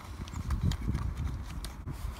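Low, uneven rumble of wind buffeting the microphone, with small clicks and rustles from a toothpaste tube and its cardboard carton being handled.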